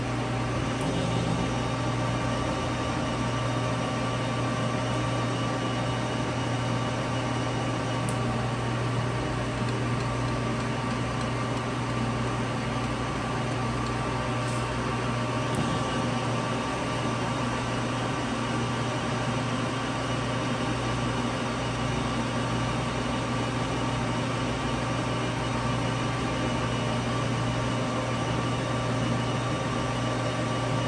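Clausing-Metosa 1340S 13x40 gap-bed lathe running with its spindle under power and the lead screw engaged to drive the carriage through the half nut for threading: a steady gear-driven hum with several steady tones layered over a strong low drone.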